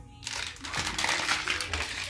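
Loud rustling and crinkling noise, starting about a quarter of a second in, over faint background music.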